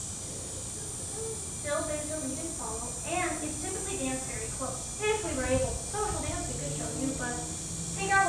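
A woman speaking, with a short pause at the start, over a steady high background hiss.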